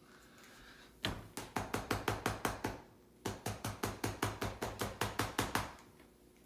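Rapid finger taps on a small plastic oral syringe, about eight sharp clicks a second in two runs with a short pause between, knocking air bubbles out of a measured dose of oral suspension.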